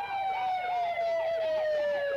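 Police car siren: one steady high tone that slowly falls in pitch, with a quick wavering wail, several rises and falls a second, layered over it.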